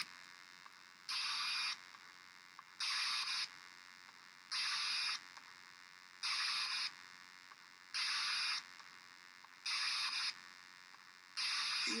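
Short bursts of hiss repeating evenly, about one every 1.7 seconds and seven in all, each about half a second long, with much quieter room noise between them.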